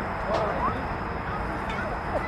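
Scattered voices of players and spectators chattering and calling out across a ball field, over steady background noise and a thin, steady high tone.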